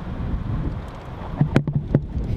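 Wind buffeting the microphone, a steady low rumble, with a few sharp clicks close together near the end.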